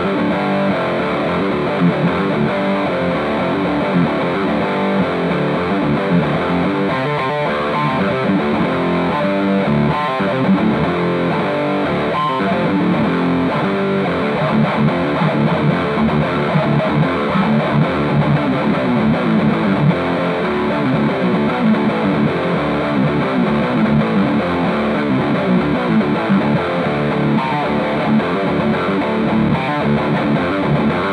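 Electric guitar played through a Devilcat Jimmy amplifier with both the overdrive and dirt channels at maximum gain: heavily distorted, saturated riffing that runs on without a break.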